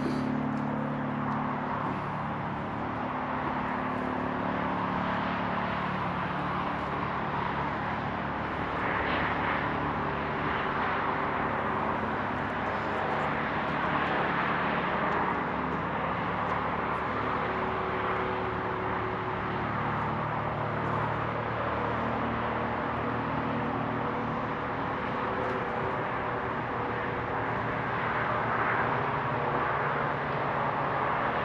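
Steady outdoor background: a low engine-like hum under an even rush of distant traffic, with little wind noise on the microphone.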